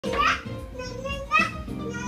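Music playing while toddlers dance, with a small child's voice ringing out loudly twice: once near the start and again about a second and a half in.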